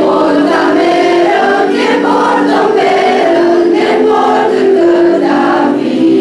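Choir of girls and young women singing together, with long held notes.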